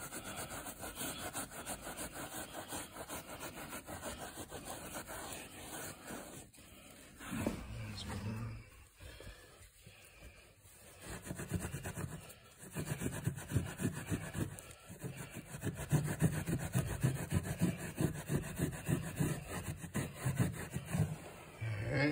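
Hand brush scrubbing carpet pile in rapid back-and-forth strokes, agitating a paint-removing solution into paint spots by hand. The scrubbing eases off briefly in the middle, then resumes harder.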